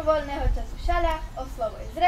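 A girl speaking in a high, young voice.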